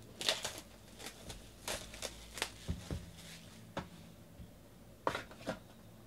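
Cardboard trading-card boxes handled by hand: a scatter of short scrapes, taps and rustles, loudest just after the start and again about five seconds in.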